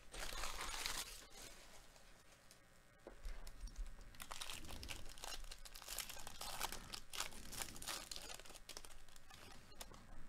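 Foil trading-card pack wrapper of a 2021 Bowman Draft jumbo pack being torn open and crinkled by hand. There is a short burst of crinkling about a second long at the start, a quieter pause, then a longer run of crackling and tearing from about three seconds in until just before the end.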